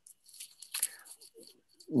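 A man's faint breath and small mouth clicks during a pause in his speech, with no steady tone.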